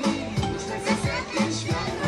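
Dance music with a steady beat, briefly quieter, with children's voices and talk over it.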